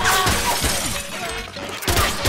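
Glass shattering as a body crashes into a glass-shelved display cabinet, the breaking glass loudest at the start and crackling on for about half a second, over a music score. Another sharp hit comes near the end.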